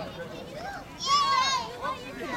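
A young child's high-pitched voice calling out wordlessly for about half a second, about a second in, among quieter adult voices.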